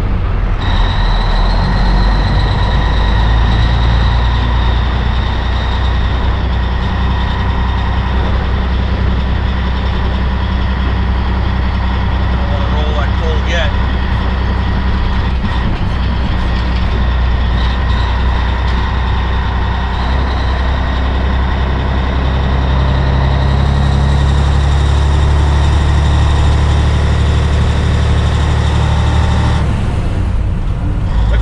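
Diesel engine of a 1984 Peterbilt 362 cabover truck running under way at low speed, with a steady high whine over the engine note. About twenty seconds in, the engine note rises.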